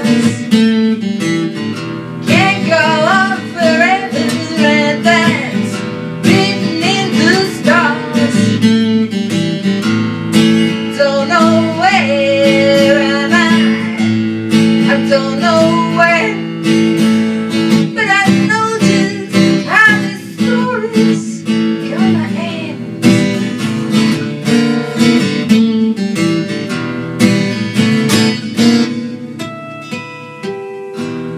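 A woman singing to her own strummed acoustic guitar, the chords running steadily beneath the melody.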